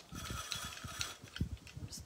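Hand-operated rotary vegetable cutter turning and shredding vegetables into a pan, with an irregular run of mechanical clicks and rattles.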